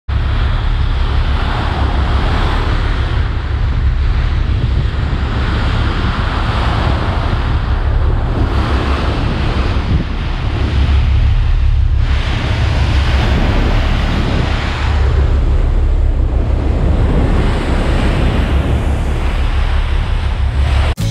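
Strong wind buffeting the microphone over the steady rush of sea water churning along a moving ship's hull.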